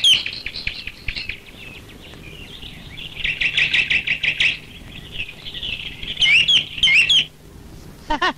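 Birds chirping: many short chirps, a dense stretch of twittering about three seconds in, and a few rising calls near the end.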